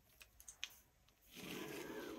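A couple of light ticks, then from about two thirds of the way in the faint scratching of a pen drawing a line on paper along a clear plastic ruler.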